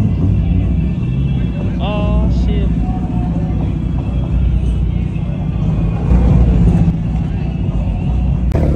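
Low exhaust rumble of a Hyundai Elantra N's turbocharged four-cylinder as the car rolls at low speed, steady throughout. A voice cuts in briefly about two seconds in.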